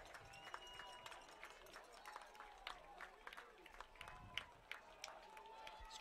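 Near silence: faint open-air field ambience with distant voices and scattered small clicks.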